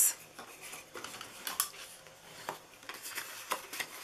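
Cardstock being folded along its score lines and the creases sharpened with a bone folder: soft paper rubbing and rustling with a few light clicks.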